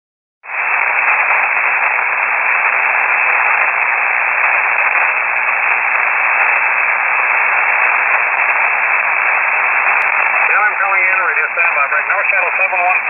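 Shortwave receiver in upper sideband putting out the steady hiss of HF band noise, cut off sharply at the top by the narrow SSB filter, with a faint low hum under it. The hiss starts about half a second in. Near the end a weak, noisy aircraft radio voice begins to come through the static.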